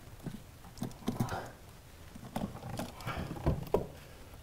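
Heavy car battery knocking and scraping against its tray and the surrounding parts as it is lowered in and seated, in several clusters of short knocks, the sharpest just before the end.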